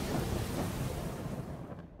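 Edited-in crash-like transition sound effect decaying away: a noisy wash spread across all pitches, with no tone or rhythm, that dies out just before the end.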